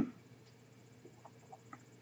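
A man's voice trails off, then a quiet pause with about four faint short blips, roughly a quarter second apart, in the second half.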